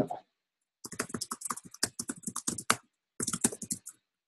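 Fast typing on a computer keyboard: quick runs of key clicks, broken by a short pause about three quarters of the way through.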